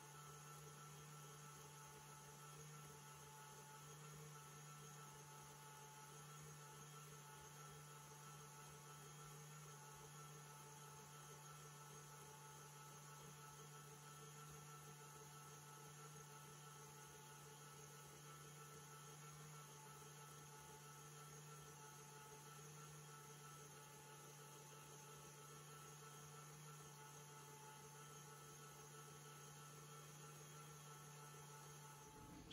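Very faint, steady motor hum of a KitchenAid stand mixer running at constant speed, whipping instant coffee, sugar and water into a foam; the sound is otherwise near silence.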